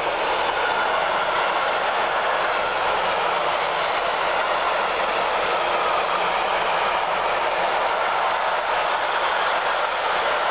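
Container freight wagons rolling past close by: a steady, loud wheel-on-rail rolling noise that holds even throughout, with no distinct rail-joint clicks.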